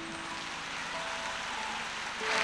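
Concert audience beginning to applaud as the last sustained notes of the music die away, the clapping growing into a steady patter.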